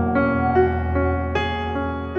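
Piano playing slow, sustained chords in the closing bars of a pop ballad, a new chord struck near the start, about half a second in and again near 1.4 seconds, with no singing.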